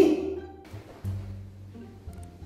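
Background music of low, held bass notes that step to a new pitch about a second in, following a man's voice that trails off at the start.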